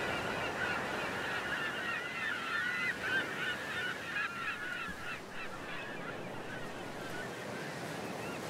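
A flock of gulls calling over the sea, many short overlapping squealing calls at once, thinning out in the second half, over a steady wash of surf.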